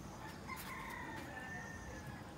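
A rooster crowing once, a single drawn-out call that starts about half a second in and falls slightly in pitch toward its end.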